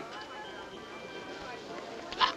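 A quiet stretch of an old film soundtrack: a low, even hiss with a few faint steady tones under it.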